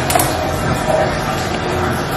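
Steady rushing noise of a bathtub filling from the tap, together with a small electric space heater's fan running. There are a couple of light clicks right at the start.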